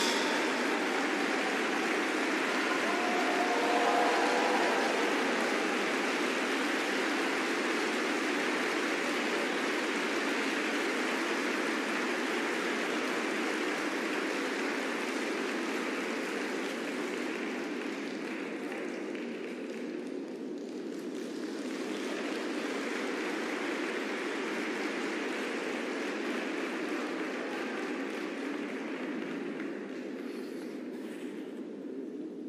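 Audience applauding steadily, with a brief faint cheer about four seconds in. The applause slowly fades and thins out toward the end.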